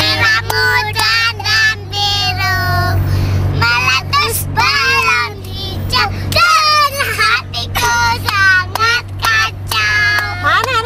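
Young girls singing a children's song, with frequent short sharp clicks and a steady low hum from the car underneath.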